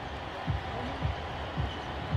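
Basketball dribbled on a hardwood court: a series of low bounces about every half second over steady arena background noise.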